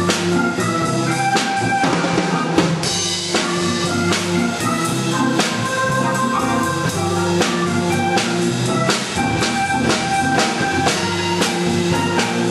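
Hammond M44 organ playing held chords and melody lines over a steady drum beat.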